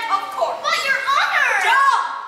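A child's high-pitched voice giving wordless cries, several short calls with the pitch swooping up and down.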